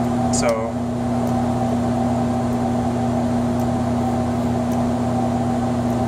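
Steady hum and fan noise from a running PDP-12 minicomputer, with a strong low tone.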